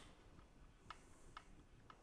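Three faint, light clicks about half a second apart: a 5 mm Allen wrench turning a bracket mounting bolt to snug.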